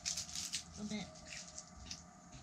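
A flurry of small, crisp crackles close to the microphone, thickest in the first half-second and thinning after. They come from freeze-dried ice cream sandwiches and their paper wrappers being handled and nibbled.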